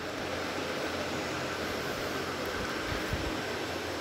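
Steady, even background noise like a hiss, with no distinct events.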